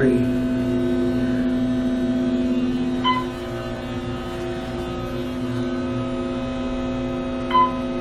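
Steady electrical hum inside an Otis hydraulic elevator cab, dropping slightly in level about three seconds in. Two short electronic chime tones sound, one about three seconds in and one near the end.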